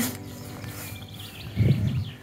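Quiet lakeside outdoor ambience with a few faint bird chirps about a second in, and a short low rumble near the end.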